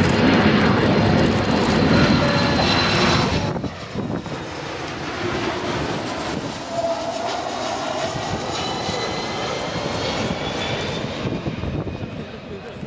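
Kawasaki P-1 maritime patrol aircraft's four turbofan jet engines during a low flyby, loudest for the first three and a half seconds, then quieter with a steady high whine as the aircraft flies away.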